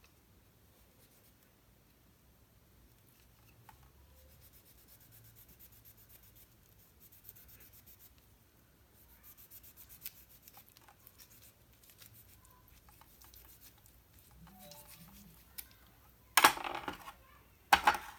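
Faint scraping and ticking of a kitchen knife cutting a lime on a plastic tray, then a brief loud clatter of kitchen utensils about sixteen seconds in and a shorter one near the end.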